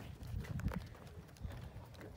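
Footsteps of several people walking on a wooden plank boardwalk: irregular soft knocks of feet on the boards over a low rumble.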